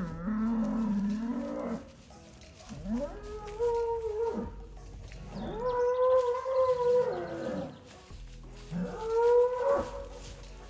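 Cattle bellowing in a series of four long, drawn-out moos, each rising in pitch at the start and falling away at the end, while bulls in the herd fight.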